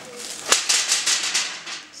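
A louvred window shutter being pushed open by hand: a sharp clack about half a second in, then a quick rattle of the slats that dies away.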